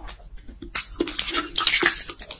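Close-miked eating sounds of carbonara fire noodles in a thick, creamy sauce: a few soft chewing clicks, then, from just under a second in, about a second of loud, wet squelching from the sauce-coated noodles.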